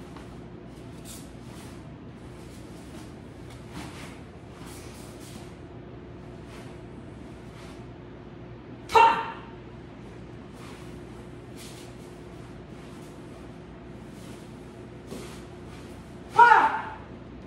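A woman's single sharp kihap shout about nine seconds into a taekwondo form, over faint swishes of the uniform and movement on the mats as the techniques are performed.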